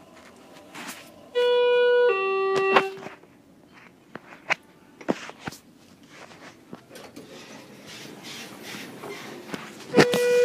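Elevator arrival chime: two electronic tones, a higher note followed by a lower one, a little over a second in, then the same two-note chime again at the end. A few faint knocks fall in between.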